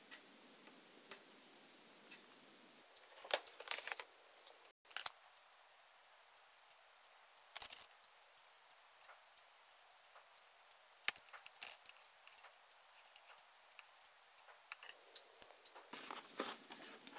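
Faint, scattered clicks and taps from handling a hot glue gun and a small crochet flower, a few sharp ticks at a time over a quiet hiss.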